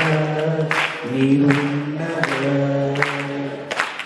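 A man singing a slow worship song into a microphone, in several long held notes with short breaks between phrases.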